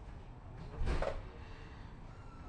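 Low, steady rumble inside a tram standing at a stop, with one short burst of noise about a second in.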